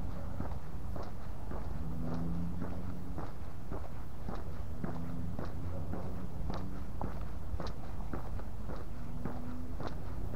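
Footsteps of a person walking at a steady pace, a regular tread of short steps over a low steady rumble.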